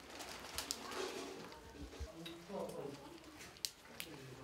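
Faint murmur of voices with a few short, sharp clicks about half a second in and near the end.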